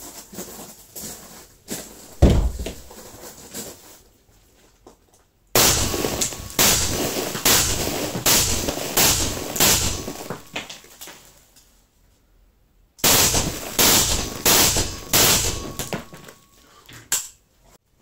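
Short-barrelled AK-205 (5.45 mm, 7N6 cartridge) firing through a TGP-A suppressor: one shot about two seconds in, then two quick strings of suppressed shots, the first about five seconds in and the second near the end.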